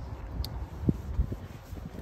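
Low, steady outdoor rumble with a faint click about half a second in and a short soft knock just under a second in.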